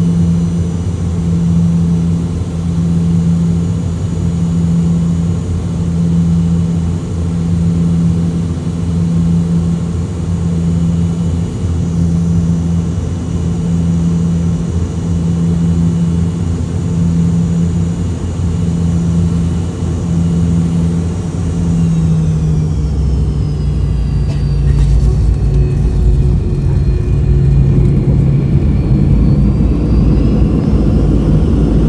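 Cabin sound of a rear-engined jet airliner on final approach: a steady engine drone with a hum that pulses slowly about once every second and a half. About three-quarters of the way in the engine pitch falls, a few sharp thumps mark the touchdown, and a heavier low rumble of the wheels rolling on the runway follows.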